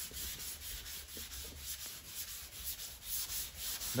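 Dry hand sanding of 2K filler primer on a car body panel with 400-grit paper on a hook-and-loop sanding block: a steady scratchy rubbing in repeated back-and-forth strokes.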